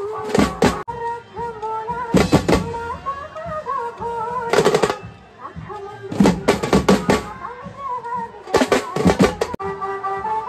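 Mumbai banjo-party band playing a dhammal Marathi song: a wavering high melody runs throughout, and dhol, snare drums and cymbals come in with bursts of rapid hits about every two seconds.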